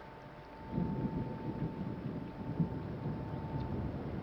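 A low, uneven rumble that swells about a second in and holds, with a faint steady high tone over it that stops just before the end.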